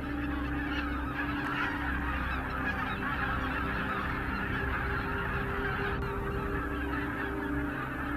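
A large flock of greater white-fronted geese calling all at once, a dense, continuous chatter of overlapping honks at a steady level.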